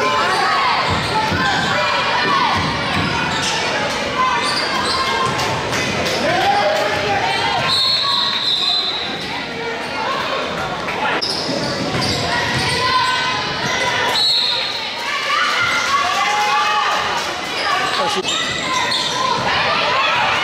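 A basketball is dribbled on a hardwood gym floor while sneakers squeak in short bursts, all echoing in a large gym, with voices calling out.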